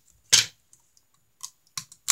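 A plastic blind-bag wrapper being handled and torn open: one loud crackle about a third of a second in, then a few faint crinkles and ticks near the end.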